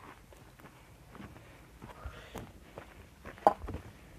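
Footsteps on dry ground strewn with twigs, dry grass and old timber, with faint scattered crunches and one sharp crack about three and a half seconds in.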